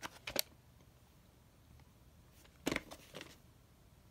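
Hands handling a cardboard VHS tape sleeve: a few short clicks and scrapes near the start, then another short cluster of clicks a little under three seconds in.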